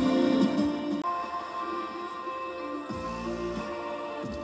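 Non-copyright electronic music playing through the Jeep's stock radio and speakers, fed by aux cable from a portable CarPlay head unit, with the radio volume being turned up. The playback sounds clean, with no obvious hiss or crackle.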